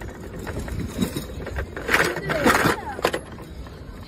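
Motor scooter running with a steady low rumble, a few clicks, and a person's voice over it about two seconds in.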